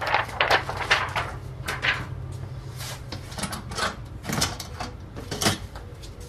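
Scattered rustles, light knocks and clicks from handling the film and screen on a worktable, over a low steady hum.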